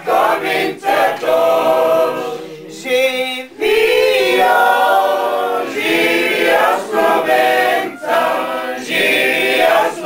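A group of people singing a song together without instruments, holding long notes, with a brief break about three and a half seconds in.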